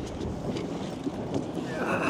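Wind buffeting the microphone and water washing against the hull of a small boat under way, with a faint steady low hum underneath.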